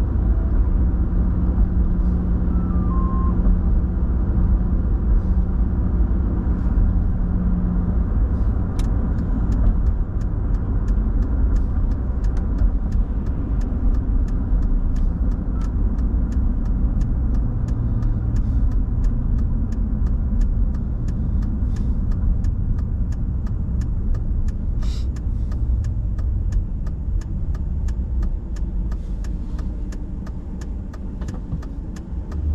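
Road and engine noise inside a moving vehicle's cabin: a steady low rumble with a low hum over the first several seconds. From about a third of the way in come many faint sharp ticks, and the noise eases near the end as the vehicle slows.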